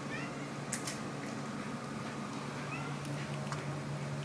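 Domestic cat giving two short, high mews, one near the start and another near the end, with her fetch toy held in her mouth. A couple of sharp clicks come about a second in.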